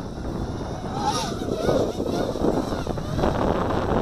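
Wind buffeting the microphone with a steady low rumble, over the faint whine of a small FPV racing quadcopter's motors as it flies some way off.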